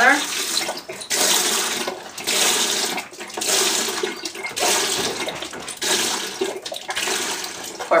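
Liquid, the hydrogen peroxide for a home de-skunking mix, poured from a bottle into a plastic tub already holding baking soda and detergent. The pour comes in uneven splashing surges that break off every second or so.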